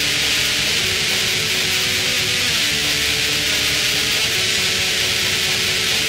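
Raw, lo-fi black metal from a cassette demo: distorted guitar chords under a dense, hissing wash of treble, at a steady loudness. The chords change every second or two.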